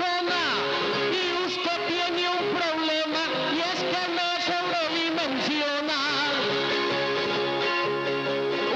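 Colombian paisa trova: a male trovador singing an improvised verse over a steady guitar accompaniment.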